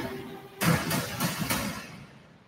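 Movie-trailer sound design: a string of heavy percussive hits, about four of them a third of a second apart starting just over half a second in, that then die away.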